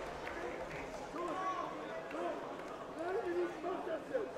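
Faint male voice of a cornerman talking to his fighter in short phrases, low under a steady hall background noise.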